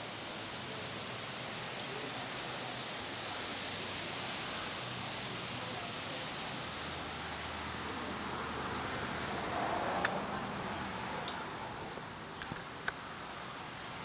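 Steady hiss of background noise with rustling from a handheld phone being moved about. A brief swell is followed by a few sharp clicks in the last few seconds.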